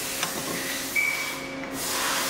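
Rubbing and light handling noise of metal pump parts being moved and picked up on a workbench, over a steady background hiss, with a thin high steady tone lasting under a second about a second in.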